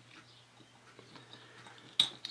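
Faint small clicks and scraping of needle-nose pliers working a plastic compressor start relay, prying out its small resistor chip, with a sharper click near the end.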